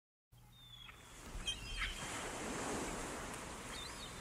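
Recorded sea surf fading in and swelling, with a few short gliding gull cries above it: the seaside sound effect that opens the song before the music comes in.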